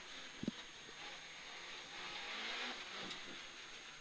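Peugeot 106 GTi rally car's four-cylinder engine running, heard from inside the cabin as a steady, fairly quiet noise, with a short knock about half a second in.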